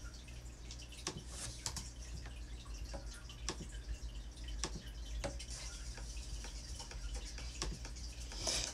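Faint, irregular small clicks and taps, roughly one every second, over a steady low hum.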